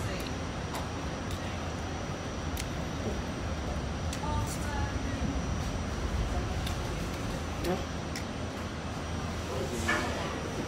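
Steady rumble of a moving train car heard from inside the car, with a few faint clicks and a brief snatch of a voice in the background.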